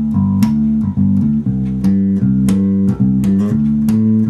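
Unaccompanied electric bass guitar played fingerstyle, a continuous flowing riff of low plucked notes changing in a steady groove, with a few sharper, brighter plucks standing out about once a second.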